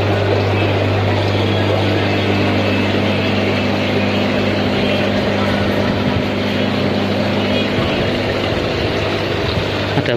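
Steady mains-powered hum of aquarium water and air pumps, with water pouring and splashing into the tanks.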